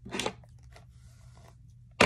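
A brief crunching rustle shortly after the start, from a section of mousse-coated hair being handled close to the microphone, then faint scattered ticks.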